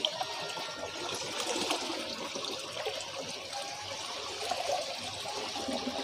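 Steady splashing of a stream of water pouring into a koi pond.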